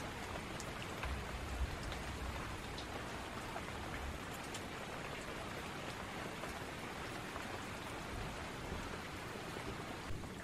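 Steady rain falling, an even hiss with scattered individual drops ticking.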